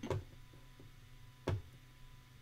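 Two short, sharp clicks about a second and a half apart, over a faint steady electrical hum.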